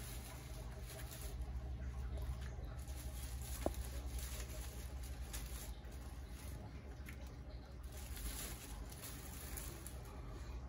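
Faint patter and handling noise of a plastic-wrapped sheet of rock wool cubes being lowered into a bucket of rooting solution to soak, over a steady low hum.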